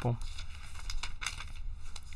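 Sheets of paper rustling and crinkling in a run of small irregular crackles as someone leafs through them, looking for lost pages.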